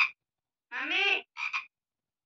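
A high-pitched voice making two short wordless sounds about a second in: the first about half a second long with a wavering pitch, the second shorter and clipped.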